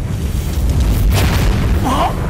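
Film sound-effect explosion of a magical fireball blast: a deep, rumbling boom, loudest about a second in. A short vocal cry comes near the end.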